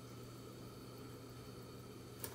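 Faint, steady low hum with a light hiss: kitchen background noise, with no distinct event.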